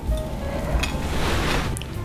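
Soft background music, with a rough crunching scrape about halfway through as a knife cuts into the cake's crisp, crumbly streusel crust.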